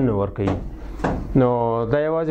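A man speaking, lecturing, with a long drawn-out vowel near the end and a brief click about a second in.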